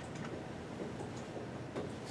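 Quiet classroom room tone: a steady low hum and hiss with a few faint, sharp ticks.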